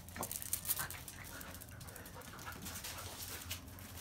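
A Boston terrier making a run of short, quick sounds close by, bunched in the first second or so, then quieter.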